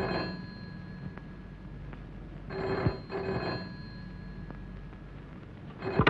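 Telephone bell ringing in a double-ring pattern: the tail of one ring at the very start, then another pair of rings about two and a half seconds in, with a pause between.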